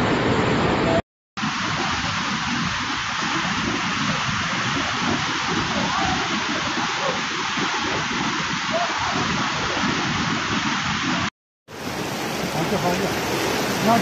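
Fast-flowing floodwater rushing steadily, a dense, even roar of water. It cuts out twice for a moment, about a second in and again near the end.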